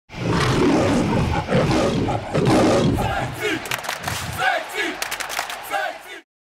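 Crowd of football fans shouting and chanting together, loud and dense at first, thinning after about four and a half seconds, with a run of sharp claps in the second half.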